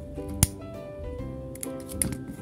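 Background music with steady tones, and a single sharp click about half a second in: a handheld lighter being struck to burn off the yarn end. A smaller click follows near the end.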